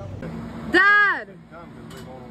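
A person's voice lets out one drawn-out, wordless call about a second in, its pitch rising and then falling, with fainter calls further off.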